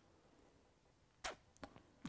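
Near silence: quiet room tone, broken about a second and a quarter in by one short mouth noise from the interviewee and a few faint clicks just after it.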